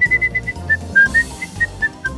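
A quick run of about a dozen short, high whistled notes, dipping in pitch around the middle, over background music with a low, steady beat.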